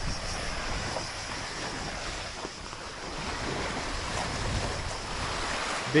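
Small waves washing onto a pebble beach, a steady wash that swells a little about four seconds in, with wind buffeting the microphone.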